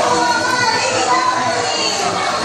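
Many children's voices at once, chattering and calling out together in a steady din.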